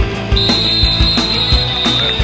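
Rock music with a steady drum beat. About a third of a second in, a long steady high whistle blast starts and holds for about two seconds: a referee's whistle blowing the play dead after the tackle.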